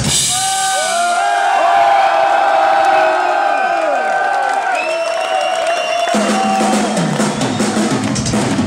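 Live rock drum kit solo: drums and cymbals played over a busy, ringing stage sound, with the hits coming thick and fast near the end.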